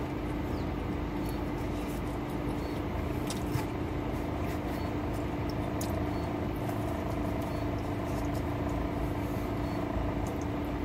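Steady hum and low rumble inside a stationary car's cabin, with one constant low tone, and a few faint clicks from chewing pizza.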